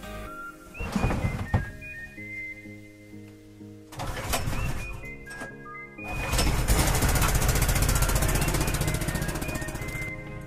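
Small gasoline engine on a portable air compressor being pull-started: a few short bursts as it is pulled over, then it catches about six seconds in and runs loudly with a fast, steady firing rhythm. Background music plays throughout.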